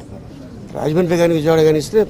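A man's voice holding one long, drawn-out vowel at a nearly steady pitch for about a second, starting under a second in after a short lull.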